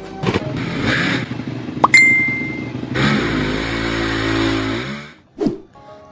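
Motorcycle engine revving and running. A sharp click comes about two seconds in; the engine note then rises at about three seconds, holds steady, and cuts off near five seconds.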